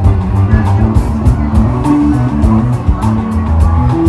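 Live band playing loud music: a bass line moving from note to note under a steady drum beat.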